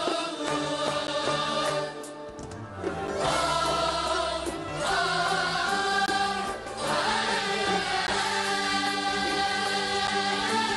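Live performance of an Uzbek song: several voices singing together over an instrumental ensemble, with two short breaks between phrases.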